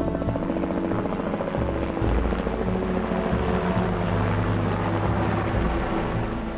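A light helicopter flying overhead, its rotor beating steadily, the noise growing fuller from about two seconds in, over a music score.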